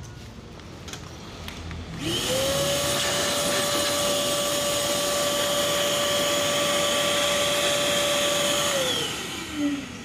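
Mayaka wet-and-dry vacuum cleaner switched on about two seconds in. Its motor spins up to a steady high whine with rushing air and runs at its top speed setting, then is switched off near the end and winds down with falling pitch.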